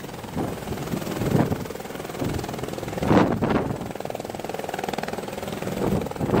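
Helicopter hovering low and setting down, its rotor and engine running steadily, with a fast, even rotor pulse in the second half. Gusts of rotor wash buffet the microphone about a second and a half and three seconds in.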